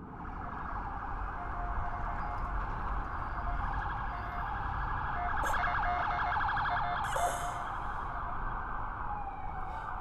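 Police car sirens wailing steadily, with a low rumble underneath.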